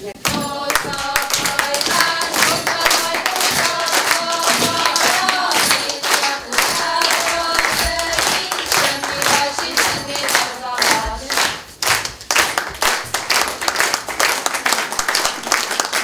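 A group singing a folk song while the audience claps along in rhythm; about eleven seconds in the singing stops and gives way to applause.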